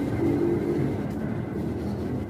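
Bus engine running nearby: a steady low rumble, a little louder in the first second.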